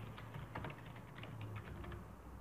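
Typing on a computer keyboard: a quick, irregular run of light key clicks.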